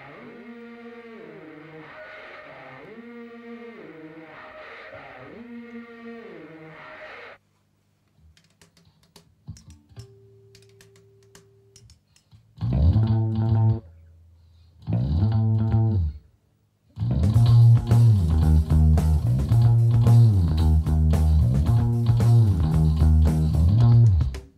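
The intro of a rock song played along on electric bass. First a distorted voice repeats a bending, sliding phrase for about seven seconds. After a few seconds of near quiet, two short phrases follow on a 1977 Music Man StingRay bass with flatwound strings. Then, about five seconds before the end, the full band comes in with drums and bass.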